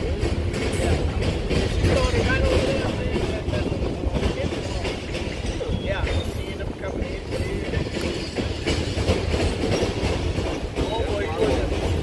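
Freight train's covered hopper cars rolling past close by: a steady low rumble with sharp clacks of wheels over the rail joints.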